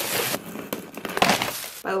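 Crinkled paper packing rustling and crackling as hands pull it out of a cardboard gift box, with a sharper crackle a little after a second in.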